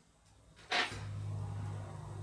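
A short rustle, then a steady low hum starts about a second in.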